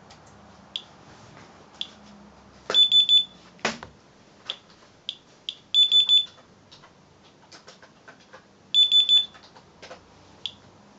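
Inspector Alert Geiger counter chirping at irregular intervals as it registers counts, with a loud burst of three quick high beeps repeating about every three seconds from its alert while the dose rate reads near 0.19 µSv/hr, more than twice the usual 0.08. A single sharp knock comes a little after the first beep burst.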